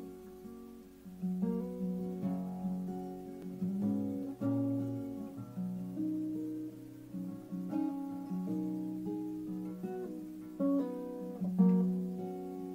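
Acoustic guitar playing an unaccompanied instrumental intro: chords plucked and strummed at a slow, even pace, the notes left ringing into each other, with a louder strum near the end.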